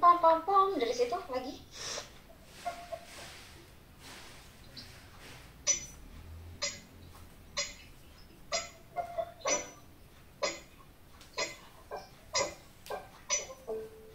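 Metronome clicking about once a second, heard over a video call, with a few short keyboard notes falling between the clicks.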